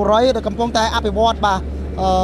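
Speech: a person talking continuously, over a steady low hum.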